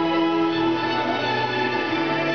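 Music: slow string music holding long, sustained notes that change pitch every second or so.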